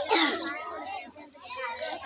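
Many children's voices chattering and talking over one another, with a louder voice right at the start.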